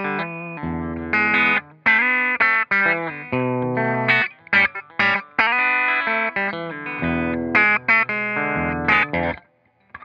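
Fender American Special Telecaster played clean on its bridge Texas Special single-coil pickup: a bright run of strummed chords and picked single notes that stops shortly before the end.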